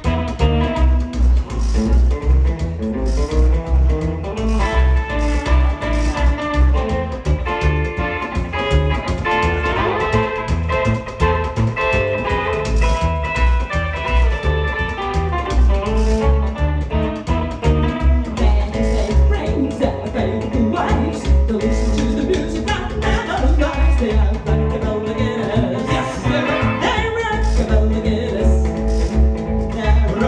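Live rockabilly played on a hollow-body electric guitar and an upright double bass, with a steady, driving low beat from the bass.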